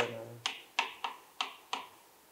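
Chalk striking and scraping a blackboard as a short word is written: five sharp taps, roughly three a second, stopping shortly before the end.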